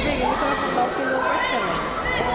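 Several people shouting and yelling at once, some high voices held in long shouts.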